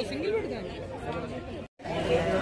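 Indistinct chatter of people talking among market stalls, with a brief dropout to silence just before the end.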